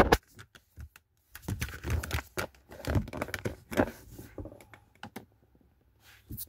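Hands handling a car's alarm wiring harness and its plastic multi-pin connector: irregular small clicks and rustling that stop about a second before the end.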